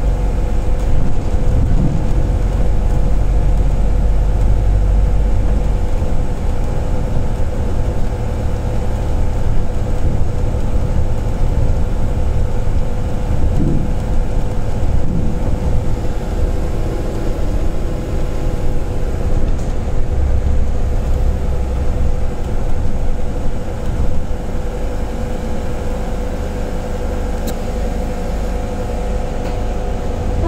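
Cabin noise on the upper deck of a Volvo B5LH hybrid double-decker bus under way: a steady low rumble from the drivetrain and road, strongest in the first few seconds, with a constant hum over it.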